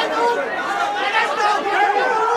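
Several voices talking over one another: overlapping chatter.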